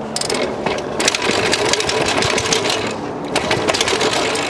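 A heavy London hire bike with a front carrier rack clattering down a flight of stone steps: a fast, uneven run of knocks and rattles as the wheels drop from step to step.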